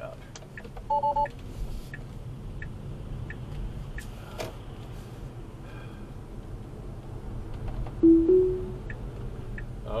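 Tesla cabin with steady road rumble and a turn signal ticking. A short double chime sounds about a second in, and near the end the louder two-note rising chime of Full Self-Driving beta being re-engaged.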